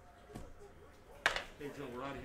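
A man's voice talking in a small room, with a light click shortly after the start and a louder, sudden start of speech a little past halfway.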